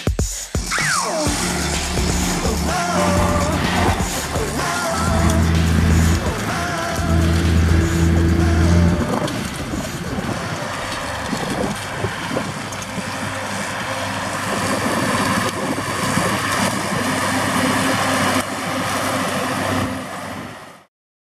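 Electronic music with a stepping bass line for about the first nine seconds. It gives way to the steady running of a Rába 320 articulated tractor's John Deere PowerTech diesel as it pulls an IH disc harrow across stubble.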